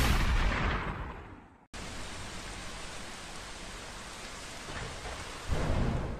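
Analog TV static. A loud burst of noise fades over about a second and a half and cuts off, then a steady hiss of static follows, with a deeper swell near the end that fades away.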